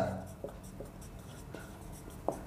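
Marker pen writing on a whiteboard: faint strokes with a few light taps of the tip.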